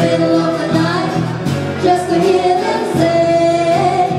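A woman singing a song live with long held notes, accompanied by a steel-string acoustic guitar.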